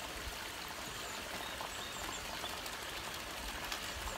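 Small garden-pond waterfall splashing steadily into the pond.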